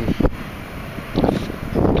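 Wind buffeting the microphone in low rumbling gusts, with two sharp clicks about a quarter second in.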